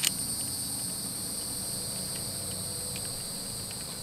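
Steady high-pitched chorus of insects, with a sharp click at the very start and a few faint small clicks from handling the camera mount and bolt.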